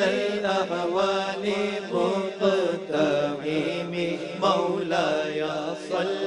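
Several men's voices chanting a naat, an Urdu devotional song in praise of the Prophet, with long held, bending notes over a steady low drone and no percussion.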